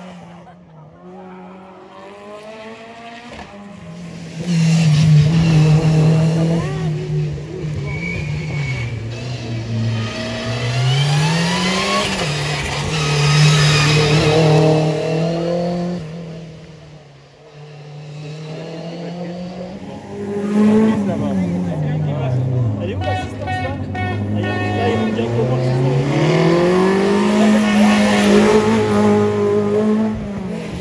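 Two rally cars in turn taking a hairpin, their engines revving hard, the pitch rising and falling as they brake, shift and accelerate away. The second car comes in a few seconds after the first fades.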